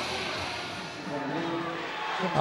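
Steady arena crowd noise in an ice rink, with faint music under it.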